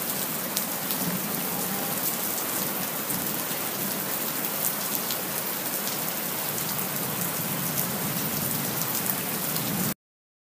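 A steady, even hiss of rain-like noise dotted with faint light ticks. It cuts off abruptly at the end.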